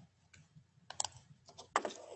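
A few irregular clicks of computer keyboard keys being tapped. The loudest come about a second in and again near the end.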